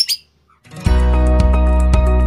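A young white-rumped shama's squawk cuts off at the very start, followed by a moment of silence. About a second in, intro music begins with sustained notes and a beat.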